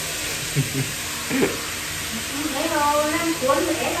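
A man's voice: two short chuckles, then a few words, over a steady hiss.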